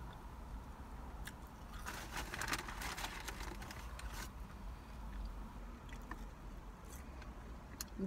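A person chewing seasoned French fries close to the microphone: soft mouth clicks and crunches, clustered about two to three seconds in, with a few more later, over a low steady rumble.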